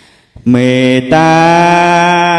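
A man singing a traditional Khmer song: about half a second in he starts a long held note, breaks it briefly near the middle, then sustains it with a slow vibrato.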